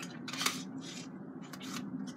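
Plastic false-eyelash tray and its packaging being handled: a few short, light clicks and scrapes spaced through the moment.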